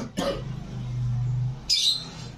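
A small dog growling low and steadily for about a second while playing, followed near the end by a short breathy huff.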